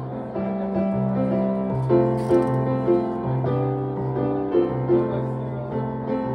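Solo acoustic piano played live: a held bass note under chords, with accented melody notes picked out above.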